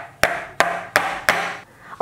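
Batter-filled metal muffin tin knocked down on the work surface four times, about three knocks a second, each with a short ring: tapped so that air bubbles rise out of the batter.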